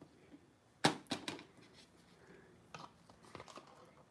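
Paint-soaked water gel beads dropped onto watercolour paper in a box: one sharp splat about a second in, followed by several lighter taps as beads land and bounce.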